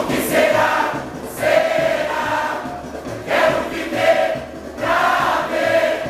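Large samba-school chorus singing the school's samba-enredo together, over a steady beat. The sung phrases swell and fall about every second and a half.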